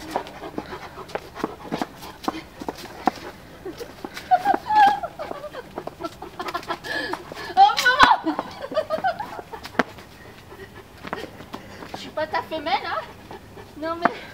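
Large dogs panting and moving about close by as they jump up on a person, with many short clicks and knocks and brief bits of a woman's voice.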